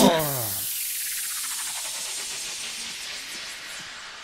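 DJ mix transition effect: the dance track stops with a quick downward pitch drop, then a hissing white-noise sweep fades away over the next few seconds.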